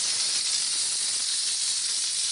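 Spray gun of a mobile steam car washer hissing steadily as it puts out atomised water mist in its 'warm water' wetting mode.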